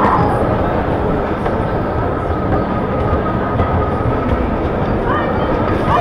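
Bumper car driving across the metal floor of a dodgem track: a continuous rolling rumble with a thin steady whine over it, and brief rising squeals near the end.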